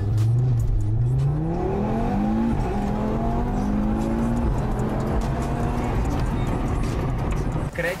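Audi car engine accelerating, heard from inside the cabin: the revs climb, drop at an upshift about two and a half seconds in, climb again, then settle to a steady cruise.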